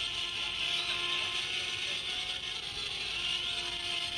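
Live rave recording between MC announcements: a quiet bed of music with a few held tones, under the steady noise of a large crowd.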